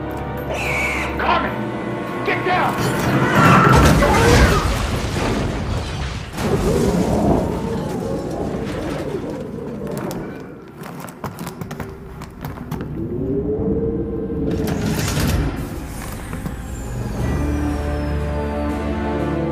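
Film action soundtrack: dramatic music mixed with heavy booms, crashes and rumbling, loudest about four seconds in, and a pitched cry that rises and falls near the end.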